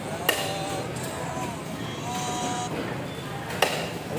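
Two sharp knocks of a cleaver striking a wooden chopping block, about three seconds apart, over a background murmur of voices.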